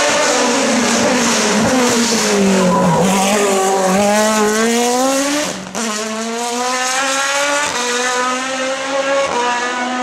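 Engine of an open-cockpit sports prototype race car at racing revs: its pitch dips as it takes the bend, then climbs as it accelerates out. It pulls away with quick upshifts, each a sudden drop in pitch, about halfway through and twice more near the end.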